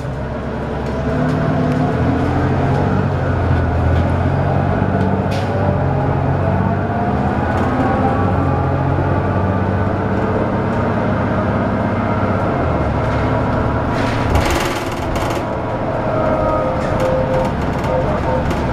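Interior sound of a 2002 Neoplan AN440LF transit bus under way, its Cummins ISL inline-six diesel and Allison B400R automatic transmission running steadily, with a faint whine rising in pitch partway through as the bus gathers speed. A brief hiss of air comes about fourteen seconds in.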